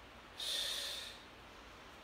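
A woman's sharp audible breath, about two-thirds of a second long, starting about half a second in, taken with the effort of a dumbbell hip-hinge repetition.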